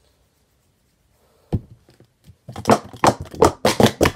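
Near silence, then a single knock about a second and a half in, then plastic sport-stacking cups clacking rapidly, several knocks a second, as a 3-3-3 stack is built up and taken down at speed.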